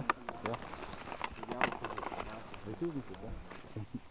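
Quiet conversation between people, a short 'yeah' at the start and a word near the end, with scattered small clicks in between.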